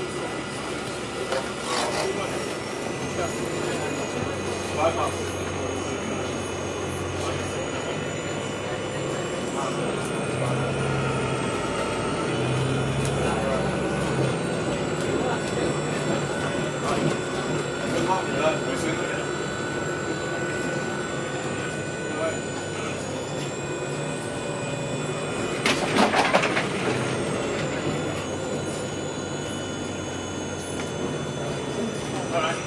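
Cabin noise inside a Bustech CDi double-decker bus on the move: steady engine and road noise whose low note shifts up and down several times around the middle, with a faint high whine. A loud burst of air hiss about 26 seconds in, like an air-brake release.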